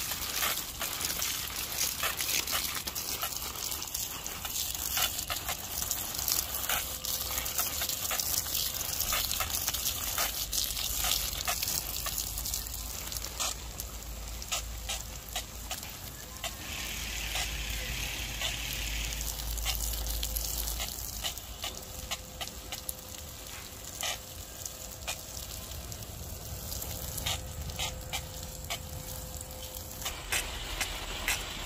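Light rain falling on a garden: a steady hiss with many small clicks of drops, and a low rumble in the middle.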